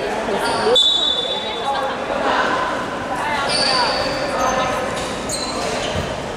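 Voices carrying in a large, echoing sports hall, with several brief high-pitched squeaks of sneakers on a hardwood basketball court.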